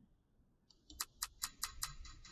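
ClassDojo's random-picker sound effect as it shuffles through the class: a high shimmer starting under a second in, overlaid with five quick ticks at about five a second.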